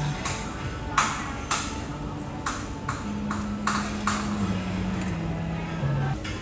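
Chopsticks clinking against a stainless-steel hot pot, about seven sharp metallic taps, the loudest about a second in. Background music with long low held notes plays underneath.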